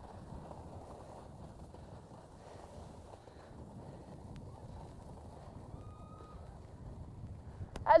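Skis sliding and carving on groomed snow heard from a skier-worn camera: a steady low rushing noise of snow and wind on the microphone, swelling slightly with the turns.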